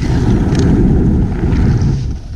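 Skis sliding and scraping over packed snow while moving downhill, a steady rough rumble, with wind buffeting the camera's microphone.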